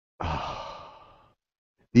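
A man's long sigh, a breathy exhale that fades out over about a second. He starts speaking at the very end.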